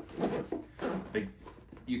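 A bag's zipper being tugged along in several short, uneven pulls, with fabric rustling. The zipper strains against an 11-inch iPad Pro packed inside, which the bag can almost but not quite close over.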